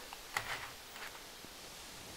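Quiet outdoor ambience with a few faint ticks and rustles in the first second or so, then a low steady hush.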